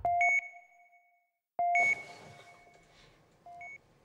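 Hospital patient monitor beeping: two loud electronic beeps about a second and a half apart, then a fainter one near the end. Each beep sounds two pitches together and rings on briefly.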